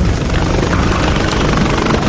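Multirotor medical-delivery drone in flight, its propellers giving a steady whir with a thin high whine on top.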